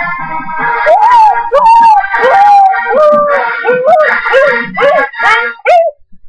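A husky howling along to keyboard music: a string of short yowls, each rising and falling in pitch, starting about a second in. The music and howling cut off suddenly at the end.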